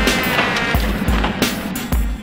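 Electronic station-ident jingle: music with deep bass hits about every two-thirds of a second and swishing effects.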